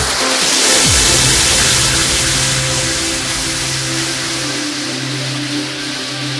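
Trance music: the four-on-the-floor kick drum stops just under a second in, leaving a swelling white-noise wash over held synth chords, a breakdown in the track.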